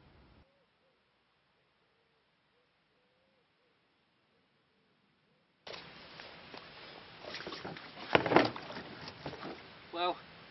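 Near silence for the first half, then rustling, scuffing and knocks as a man moves around a small boat heaped with freshly pulled lake weed and handles the weed. The loudest knock comes about eight seconds in.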